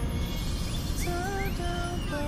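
Slow R&B ballad recording playing back from a phone, its sustained melody notes entering about a second in over a low steady rumble.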